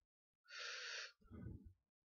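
A person's sharp intake of breath about half a second in, followed by a short low rumbling sound.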